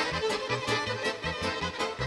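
Violin and accordion playing a lively traditional folk tune together over a steady, quick low beat.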